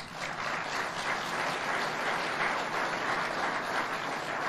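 Audience applause, breaking out at once and holding steady as even, dense clapping.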